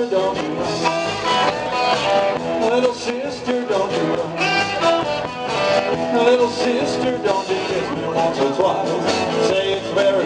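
Live band playing a rock and roll number, guitar to the fore, in a stretch without lead vocals.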